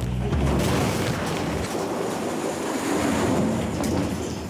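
Many hollow plastic ball-pit balls pouring out of a tipped wire basket and clattering and bouncing across a hard floor in a dense, continuous rattle.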